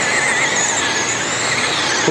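Several RC dirt modified race cars with 12-turn brushed electric motors running flat out through the turn, their motors and gears making a high, wavering whine over a steady rushing noise.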